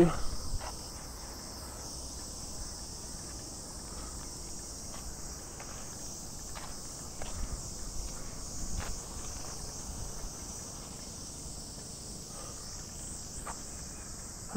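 Summer cicadas droning steadily in the surrounding trees, a continuous high-pitched buzz that holds level throughout, with a few faint taps underneath.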